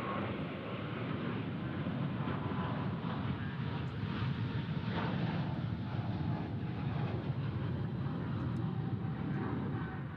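Jet engines of a twin-engine Boeing 777 at takeoff power as it climbs out, a steady, loud, deep rumble with a faint whine above it.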